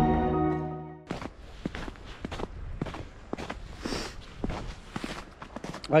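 Background music fades out in the first second, then footsteps crunch on a snow-covered path at a steady walking pace, about three steps a second.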